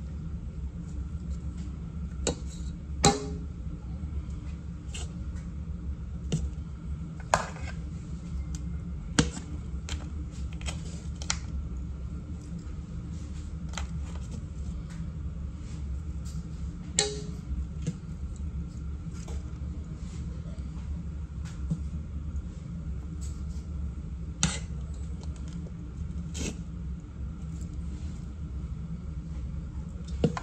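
A knife and fork clicking and knocking now and then against a metal pan, about a dozen sharp strikes spread out irregularly, over a steady low hum.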